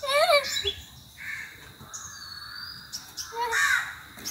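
A crow cawing: one short call at the start and another near the end, with a thin high whistle of a smaller bird in between.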